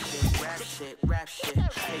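Hip hop track with a rapped vocal over a beat with heavy kick drums, played through a DJ mixer; the sound drops out briefly about halfway.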